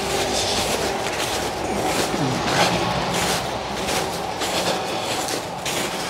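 Footsteps crunching through snow at a walking pace, about two a second, over a steady rushing noise.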